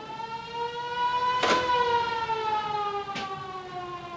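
Warning siren of De Hef railway lift bridge, sounded as the lift is set in motion. One long wail rises slightly over the first second and a half, then slowly sinks in pitch. A couple of short clicks are heard over it.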